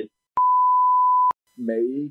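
A single steady electronic beep, one pure tone, lasting about a second and switched on and off abruptly with a click at each end, followed shortly by a man's speech.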